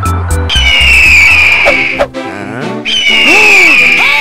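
Children's background music, with an eagle screech sound effect heard twice over it: each is a long, high falling cry, the first about half a second in and the second about three seconds in.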